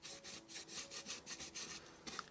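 Stiff flat paintbrush scrubbing an almost dry coat of paint onto the rim of a gilded frame, in quick short strokes of about five a second, a faint scratchy rubbing.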